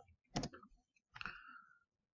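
A single sharp click about a third of a second in, then a faint short sound about a second later.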